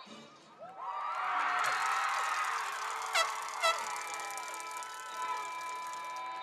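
Recorded sound effects played over a public-address system: a swell of rising tones about a second in, two short sharp descending zaps about half a second apart in the middle, and held tones that carry on underneath.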